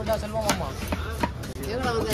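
A heavy knife chopping fish on a wooden log chopping block: a few sharp knocks of the blade into the wood.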